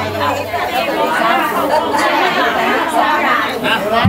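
Many people talking at once: overlapping crowd chatter in a large hall. A low steady hum fades out within the first second.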